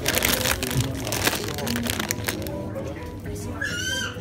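Plastic snack packets rustling and crinkling for about the first two seconds, with music playing. A short high rising voice comes near the end.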